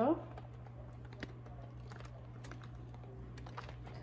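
Faint, scattered light clicks and taps from a paint-covered cradled wood board being handled and tilted back and forth by hand, over a steady low hum.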